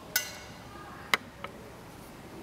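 A few sharp clicks or knocks over steady low background noise. The first, just after the start, has a brief ringing tail; a second follows about a second in and a fainter third soon after.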